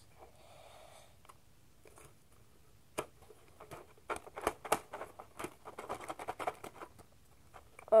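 Packaging of a DVD box set being handled and worked open: a quick, irregular run of clicks and crinkles that starts about three seconds in and goes on for about four seconds.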